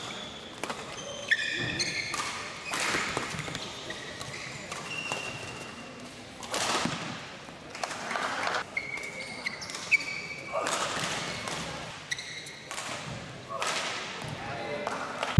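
Badminton rally in a hall: rackets strike the shuttlecock with sharp cracks, the two loudest about a second in and near ten seconds. Court shoes squeak briefly on the mat in between, with voices and shouts in the hall.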